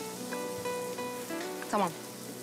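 Soft background score of held, sustained tones, with a faint steady hiss beneath; a woman speaks one short word near the end.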